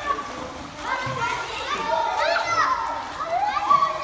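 A group of young children shouting and chattering over one another in a swimming pool, with some water splashing from a child swimming.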